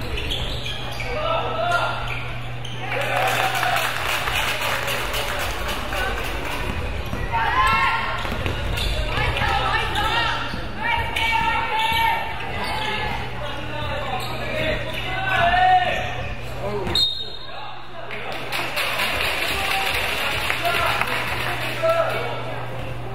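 Basketball game sounds in a gymnasium: a ball bouncing on the hardwood court amid shouting voices of players and onlookers, over a steady low hum.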